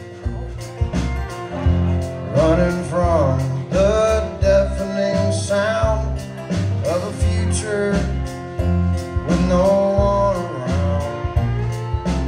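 Live country band playing an instrumental passage: a fiddle plays a sliding melody over strummed acoustic guitar, with a steady low pulse from the rest of the band underneath.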